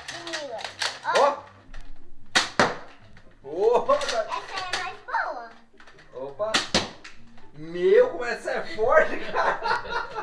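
Children's voices talking and exclaiming, broken by two sharp snaps about two and a half and seven seconds in: toy foam-dart blasters firing.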